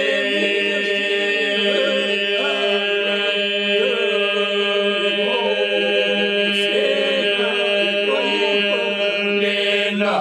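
Lab Albanian iso-polyphonic folk song sung by men without accompaniment: a steady drone (the iso) is held low and unbroken beneath a solo voice that winds and ornaments the melody above it.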